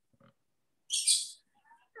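A brief hiss about a second in, with the call otherwise quiet.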